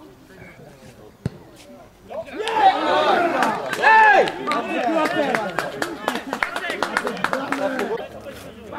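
Several men shouting and calling out at once on a football pitch, starting about two seconds in and staying loud, with many short sharp clicks mixed in. A single sharp knock comes before the shouting.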